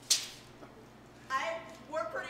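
A short, sharp burst of hissy noise that dies away within a fraction of a second, followed about a second later by a person's voice.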